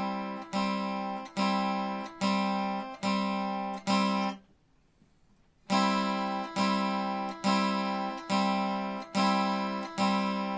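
Acoustic guitar strumming an easy-form C chord on the top three strings, one strum per beat at about 0.8 s apart. About halfway through, the strings are damped to silence for a one-beat rest, then the same steady strumming resumes.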